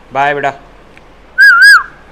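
A short, loud whistle about one and a half seconds in: a clear tone that wavers twice, then slides down in pitch. A brief vocal sound comes before it near the start.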